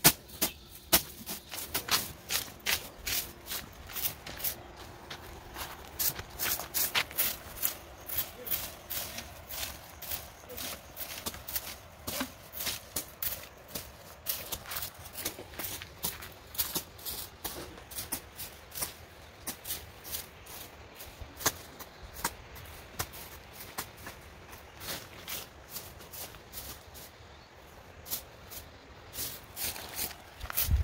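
Short scraping strokes of hand tools on the dirt and grass of a yard being cleared, several a second at an uneven pace.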